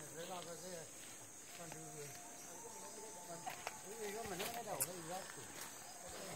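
Faint men's voices chanting in wavering, rising-and-falling phrases: the Korowai song sung on returning from a hunt. A steady high insect drone sounds underneath.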